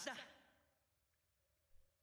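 A voice finishing a short spoken line in the first moment, then near silence with a faint steady tone.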